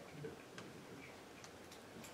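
Quiet room tone with a few faint, light ticks: one about half a second in and a couple more near the end.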